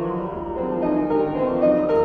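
Grand piano playing classical music, a steady stream of notes in the middle register.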